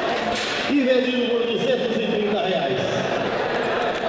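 A man's amplified voice calling out auction bids in long, drawn-out, sing-song phrases, over a background of crowd chatter.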